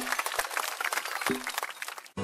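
Applause sound effect: many hands clapping in a dense, crackling patter that thins out near the end.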